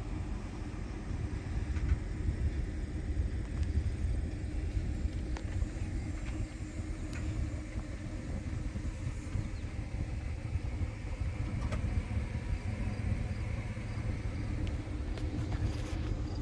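A vehicle engine idling: a steady low rumble that does not rise or fall, with a few faint clicks over it.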